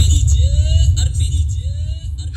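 A DJ truck's big sound system, a 22-bass setup, playing an electronic track with very heavy bass and two short rising tones about a second apart.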